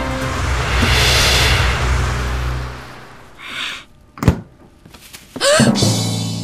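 A swelling whoosh over a low rumble that fades out after about three seconds, then a short hiss and a single sharp thunk about four seconds in. Background music comes back in near the end.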